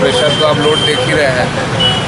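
A man speaking Hindi over the steady noise of road traffic, with a thin high steady tone for about a second near the start and again briefly near the end.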